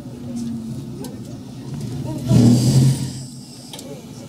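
JR 115 series electric train running slowly, heard from the cab, with a faint motor and gear whine falling in pitch early on. About two-thirds of the way through comes a loud rush of noise over a low hum, lasting under a second.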